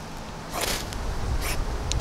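Six-inch ferrocerium rod scraped with the steel edge of a pruner sharpener, three short scrapes that throw sparks. The rod is judged to lean toward the softer mischmetal side.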